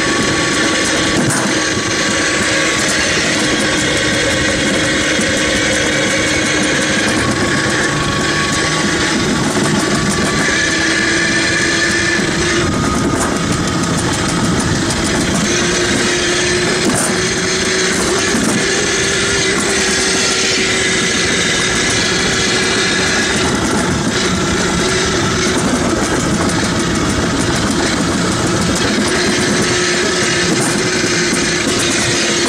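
Wheeled summer-toboggan sled running fast down a stainless-steel trough: a loud, continuous rolling rumble from the track, with a faint whine that drifts slowly in pitch.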